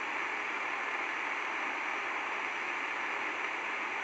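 Steady, even hiss of background noise with nothing else in it.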